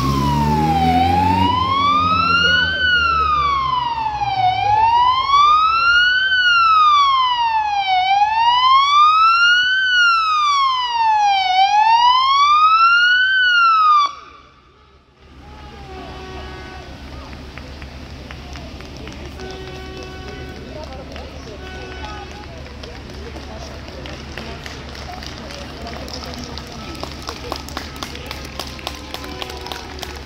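Police siren in a slow wail, rising and falling about every three seconds, which cuts off suddenly about 14 seconds in. After that comes a quieter street background, with a light rapid patter of runners' footsteps building near the end.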